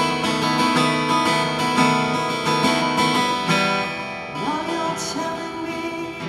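Solo acoustic guitar strummed and picked in an instrumental passage between sung verses, steady chords that grow softer about two-thirds of the way through.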